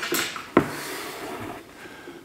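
A sharp knock about half a second in, with rustling and breathing around it, as a seated man shifts his position at a table with a microphone.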